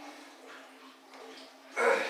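A lifter's short, forceful breath or grunt near the end, as he drives a 205 lb barbell up during a set of Larsen presses; a faint steady hum underneath.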